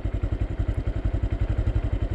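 Small single-cylinder Honda underbone motorcycle engine running steadily with an even, rapid putter, ridden on a flat tyre.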